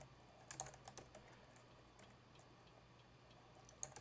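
Faint computer keyboard typing: a quick run of keystrokes in the first second or so, then near quiet, with a couple more keystrokes near the end.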